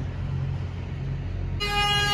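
A long, steady truck horn blast that starts suddenly about one and a half seconds in and is held, over a low steady engine rumble of idling trucks.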